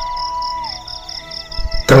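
Background music under a recitation pause: a held, flute-like note that slides down in pitch partway through, over a high chirp repeating about five times a second.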